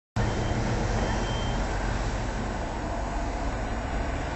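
Steady low rumble of heavy demolition machinery running, with no distinct crashes or impacts.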